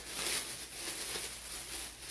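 Thin clear plastic emergency storm poncho rustling and crinkling as it is shaken out and handled.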